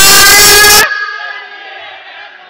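A voice shouting, heavily overdriven and distorted, the last word held for most of a second and then cut off, leaving a faint ringing tone that fades away.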